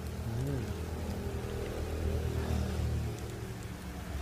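Steady pattering rustle, like light rain, from a dense mass of farmed crickets crawling over dry banana leaves, with a low rumble underneath.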